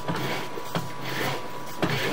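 Sewer inspection camera's push rod being fed quickly down a cast iron drain stack: a continuous rubbing and scraping, with a short knock near the middle and another near the end, over a faint steady high tone.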